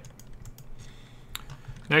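A few soft, scattered computer keyboard clicks, with one sharper click about a second and a half in.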